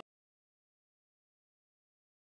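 Complete silence: the sound track drops out entirely, with no crowd, pitch or room sound at all.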